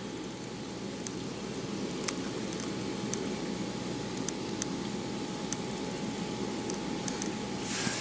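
Steady hiss of room tone with a faint high whine, broken by a few faint scattered ticks from a cellophane-wrapped sticker sheet being handled.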